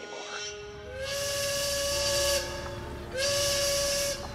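Steam whistle blowing two blasts over a hiss of steam, the first starting about a second in and lasting over a second, the second starting near the end; each slides up in pitch as it starts.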